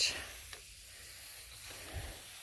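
A steady, even hiss with no distinct events: outdoor background noise between remarks.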